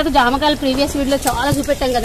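A woman speaking continuously in a conversational voice.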